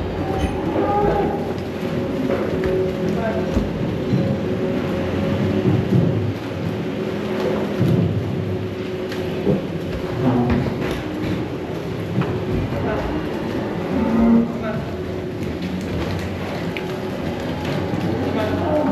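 Steady hum of large barn ventilation fans under the shuffling of a herd of Holstein steers milling about in a pen.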